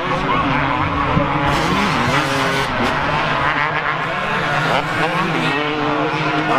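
Several motocross bikes running on the track, their engines revving up and down as they ride and jump. Their pitches overlap and rise and fall continuously.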